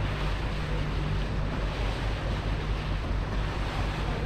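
Steady low engine rumble of a boat under way on the river, with water rushing and wind buffeting the microphone.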